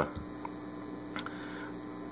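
Steady low hum with a faint hiss from a 1941 Howard 435A vacuum-tube communications receiver, played through an external amplifier, with no station tuned in.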